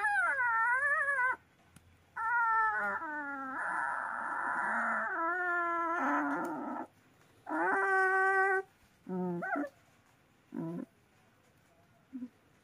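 A puppy crying in a series of high, wavering whines and howls, about seven cries with short pauses between, the last two brief. It cries in distress as parasites embedded in its ear are pulled out with tweezers.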